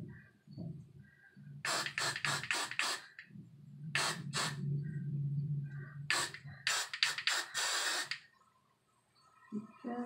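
Got2b Glued aerosol hairspray sprayed in clusters of short hissing bursts, with a longer spray about seven seconds in. It is being used as a glue to hold down the cap.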